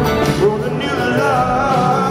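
Live rock band playing with mandolin and guitar, a male lead voice singing wavering, drawn-out notes over it.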